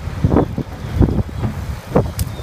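Wind buffeting the microphone in irregular gusts over a steady low rumble.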